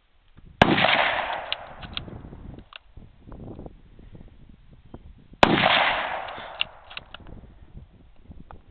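Two rifle shots from a German Mauser K98 bolt-action rifle in 8mm Mauser, the first about half a second in and the second about five seconds later. Each sharp report rolls off over a second or two, and a few clicks follow it.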